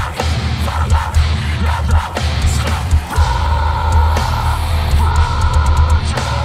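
A metalcore band playing live and loud: heavy distorted guitars and bass with hard-hit drums and cymbals.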